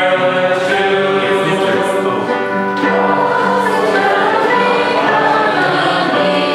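A group of voices singing a hymn together, the melody moving slowly in long held notes.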